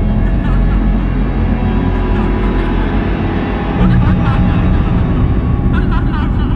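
A layered recorded track from a hip-hop album: a low, steady rumble like traffic or engine noise, with short snatches of voice over it and faint music underneath.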